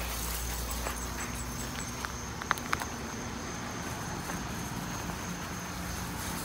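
Steady high-pitched insect trill in the background of a quiet garden, with a few faint clicks about two to three seconds in.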